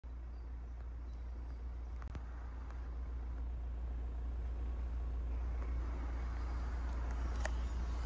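A car running, heard from the open cabin of a convertible: a low steady rumble that grows slowly louder, with a few faint clicks.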